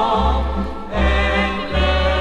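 A choir singing a Christian song in harmony with instrumental accompaniment, the voices wavering with vibrato. Underneath, a deep bass note sounds in repeated steps about every half second.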